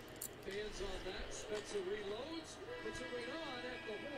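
Faint televised hockey broadcast audio: a commentator's voice over arena sound as the game clock runs out.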